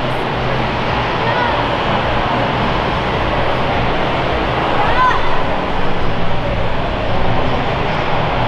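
Steady, indistinct chatter of a crowd in a large exhibition hall, many voices blending into a continuous din with no single voice clear.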